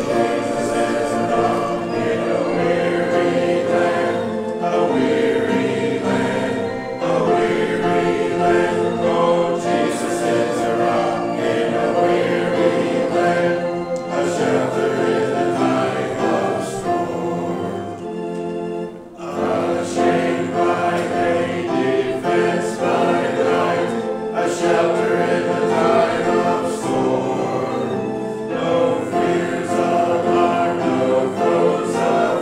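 A congregation singing a hymn together, with one short break in the singing about two-thirds of the way through.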